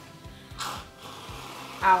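Aerosol can of whipped cream giving a short hiss of spray about half a second in.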